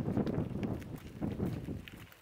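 Gravel crunching in short, uneven bursts about every half second, from footsteps and slow tyres on a loose gravel driveway.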